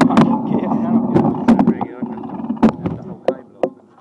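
Mountain bike rolling over a dirt trail, with a run of sharp rattles and knocks from the bike over bumps. It is loudest in the first couple of seconds, then fades.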